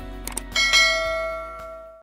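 A couple of quick clicks, then a bright bell 'ding' sound effect about half a second in, the cue for a subscribe-and-notification-bell animation. It rings and dies away, then is cut off sharply at the end, over faint background music.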